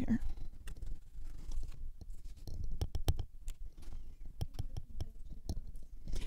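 Irregular small clicks and light scraping of a paintbrush working watercolour paint in a porcelain palette, as the palette is shifted into place.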